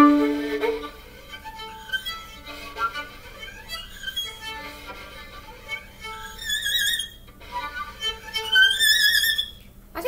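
Solo violin played with the bow: a loud held note at the start that fades within a second, a run of quieter notes, then higher notes played with vibrato twice near the end. The tone is not shrill, which the player puts down to some rosin having come off the bow.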